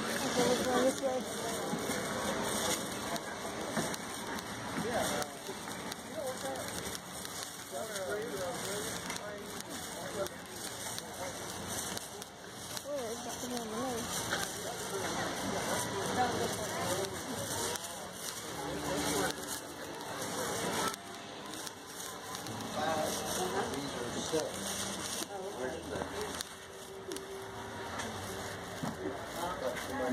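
Indistinct chatter of people talking nearby, over a steady crackling noise.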